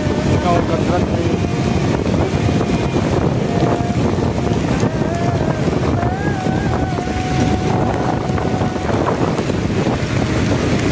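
Steady rushing noise of wind buffeting the microphone and heavy rain, recorded from the back of a moving motorcycle in a downpour, with the road noise of wet tyres and traffic underneath.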